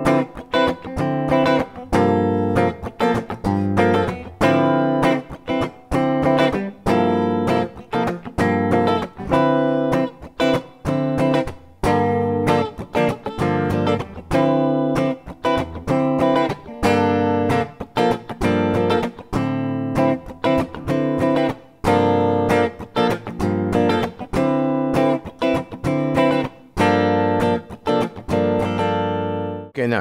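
Electric guitar strummed with a pick, playing minor-ninth chord voicings in short, repeated strums with brief gaps between them.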